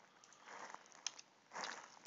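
Quiet room tone with a couple of soft computer-mouse clicks about a second in, then a soft breath near the end.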